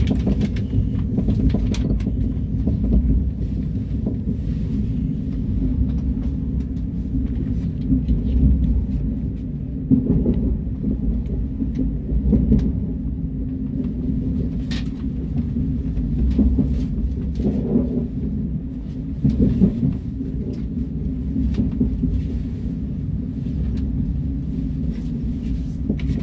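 KTX high-speed train running on the rails, a steady low rumble heard from inside the passenger cabin, with occasional faint clicks and knocks.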